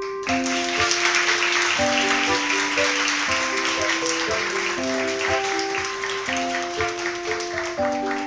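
Audience applause, breaking in suddenly at the start and thinning toward the end, over a light background-music melody of keyboard notes.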